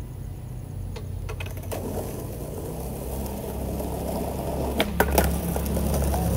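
Skateboard wheels rolling on rough asphalt, a low rumble that grows louder as the board comes closer. A few sharp clacks of the board come about five seconds in.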